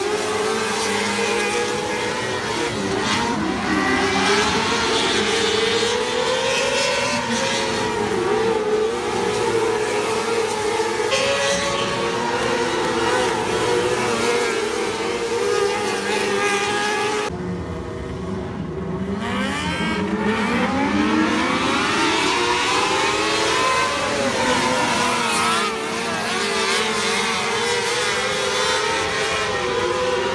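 A pack of micro sprint cars racing on a dirt oval, their high-revving motorcycle engines rising and falling in pitch as they accelerate off the turns and pass by. About two-thirds of the way through the sound briefly dulls, then several engines climb together in pitch.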